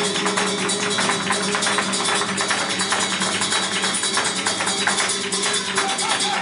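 Live flamenco: a flamenco guitar with rapid, dense palmas hand-clapping and the sharp taps of a dancer's footwork, a steady stream of quick strikes.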